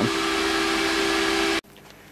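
Electric fans blowing air over aluminium heatsinks on a wood-burning stove, giving a steady hiss with a held low hum. It cuts off abruptly near the end, leaving a faint, quiet room.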